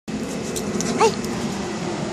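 A dog gives one short yip about a second in, over a steady background noise.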